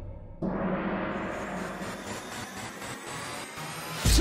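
A gong-like hit struck about half a second in, ringing on and slowly fading.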